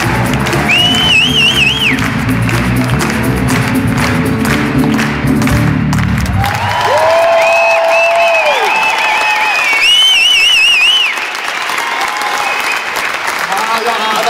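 Theatre audience applauding and cheering, with shrill wavering whistles, over the band's closing music. The music stops about halfway through and the applause and whistling carry on.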